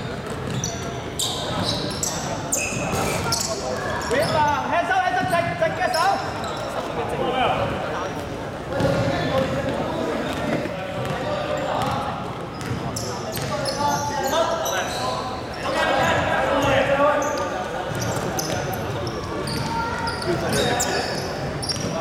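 A basketball bouncing on a hardwood gym floor and sneakers squeaking as players run, with players' and spectators' voices calling out, echoing in a large sports hall.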